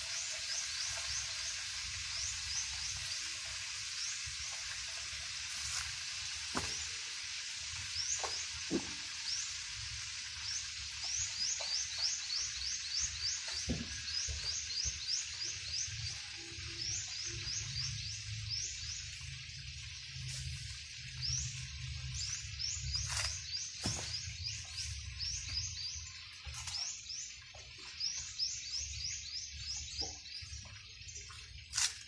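Rapid, high rising chirps repeated several times a second from animals in the surrounding vegetation, over a steady hiss. A few light knocks come as dry coconut husks are set onto a pile.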